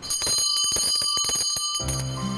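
Taoist ritual hand bell shaken rapidly during an invocation chant, a bright ringing struck about six to seven times a second. Near the end a low chanting voice comes in under the bell.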